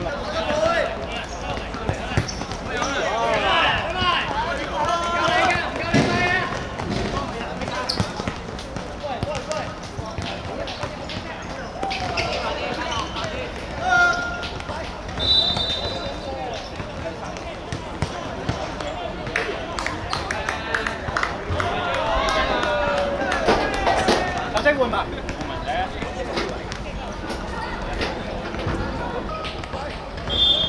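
Football being kicked and bouncing on a hard outdoor court in sharp knocks, under players' shouting voices. A short, high whistle tone sounds about halfway through.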